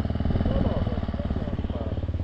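Off-road dirt bike engine idling steadily close by, its firing pulses even and unchanging.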